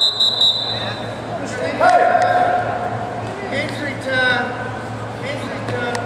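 Shouts from spectators in a gymnasium during a wrestling bout, the loudest about two seconds in and again about four seconds in. A steady high referee's whistle ends about half a second in.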